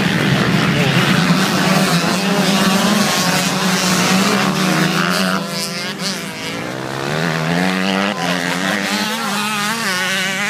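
A pack of dirt-bike engines revving together at a race start, their pitches rising and falling over one another, then pulling away: the sound drops off about six seconds in, leaving single bikes revving up as they ride off.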